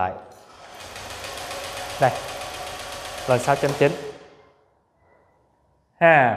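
Honda scooter's electric starter cranking the engine for about four seconds with a fast, even churning, then stopping; the engine does not catch. The ECM is commanding fuel injection, but no fuel is coming out of the injector.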